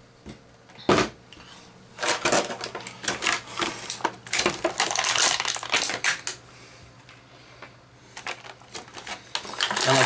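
Action figure packaging being handled and opened, cardboard box and plastic tray: a single knock about a second in, then a few seconds of dense crinkling and rustling with scattered clicks, thinning to occasional clicks near the end.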